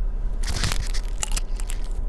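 Plastic packaging crinkling as it is handled: a rustle starting about half a second in, then a few sharp crackles.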